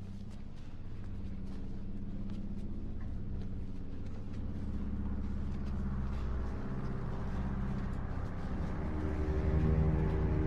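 Low, droning suspense score from a film soundtrack, with sustained deep tones over a rumbling bed, slowly swelling louder.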